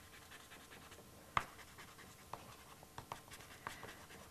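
Soft pastel stick dabbing and scratching on paper, heard as faint light ticks and scrapes, the clearest about a second and a half in.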